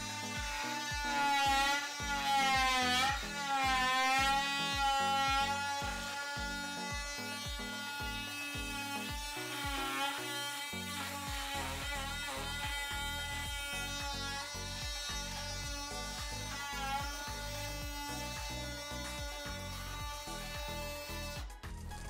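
Cordless DeWalt 18V brushless oscillating multi-tool buzzing as its wood-cutting blade undercuts a painted timber door architrave. Its pitch dips and recovers under load a few seconds in. Background music with a steady beat plays underneath.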